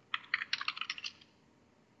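Typing on a computer keyboard: a quick run of light keystrokes for about a second, then it stops.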